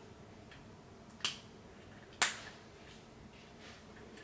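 Two sharp clicks of small plastic toy parts being handled, about a second apart, the second louder.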